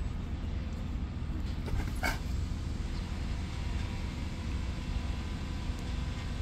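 Steady low outdoor rumble, with one short, sharp rush of noise about two seconds in.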